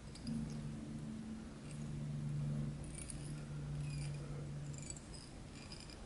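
Faint small ticks and scratches of fly-tying materials and a thread bobbin being handled at the vise, over a low steady hum that stops about five seconds in.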